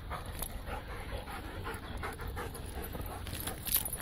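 Two dogs, a brown Doberman and a black-and-white dog, panting in quick repeated breaths as they play-fight.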